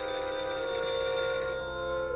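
A desk telephone's bell ringing, starting sharply and dying away near the end, over orchestral film-score music.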